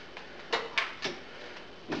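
Three short clicks and knocks of kitchen handling between about half a second and a second in, as he adds grain to the pot of hot water.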